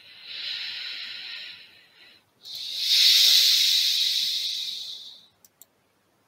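Two long hisses, the second louder and longer, followed by two short clicks near the end.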